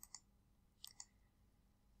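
Near silence with a few faint short clicks: a pair right at the start and another pair a little before one second in.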